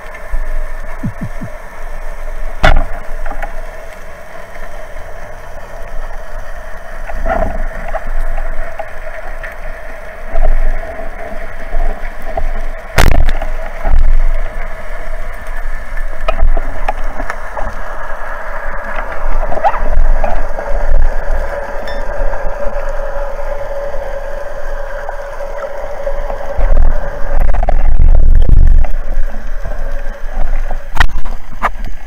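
Underwater sound with a steady drone, and one sharp crack about thirteen seconds in: a band-powered speargun firing. Low rumbling water noise builds near the end.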